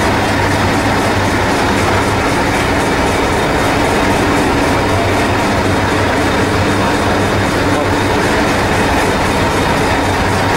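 Diesel engine of the Hastings diesel-electric multiple unit 1001 ('Thumper') idling steadily while the train stands at the platform.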